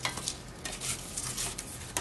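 Light handling sounds: cardboard sheets sliding and a tin-can lid clinking as it is set down on a cardboard stack, a few short scrapes and clicks.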